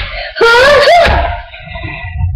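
A child's loud wavering vocal wail, under a second long, its pitch wobbling down and up and ending on a rise before it dies away.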